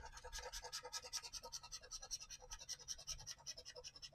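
A Florida Lottery $20 Gold Rush Legacy scratch-off ticket being scratched, a faint, quick run of rasping strokes, several a second, as the coating is rubbed off, stopping at the very end.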